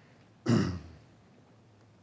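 A man clearing his throat once, a short, loud rasp about half a second in.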